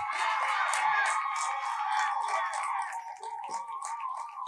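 A steady high tone held throughout, over hall crowd noise and scattered hand claps.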